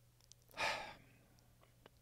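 A man's sigh, one audible breath out close to the microphone, about half a second long and starting half a second in, as he composes himself while overcome with emotion. A few faint clicks come just before and after it.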